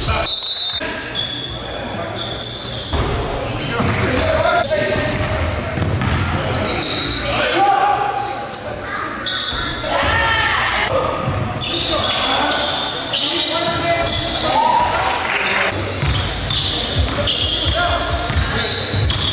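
Live basketball game sound in a gymnasium: the ball bouncing on the hardwood court and players calling out, all echoing in the hall.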